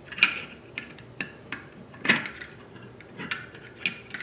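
Scattered light metallic clicks and clinks from the barrel collar and barrel of an LWRCI SMG45 being handled and fitted back into the upper receiver. Two sharper clinks stand out, about a quarter second and about two seconds in.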